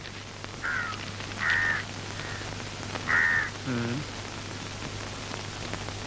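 Crows cawing several times, short calls about a second apart, over a steady background hiss.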